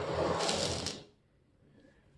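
Brief handling noise: a rustling scrape of a hand or camera against the bench, about a second long.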